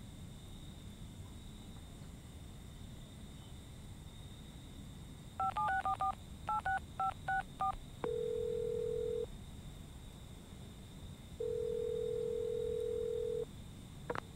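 Mobile phone keypad giving touch-tone beeps as a number is dialed: about nine short beeps in two quick runs. Then the call's ringing tone through the handset: two long steady beeps, the second longer, with a pause between.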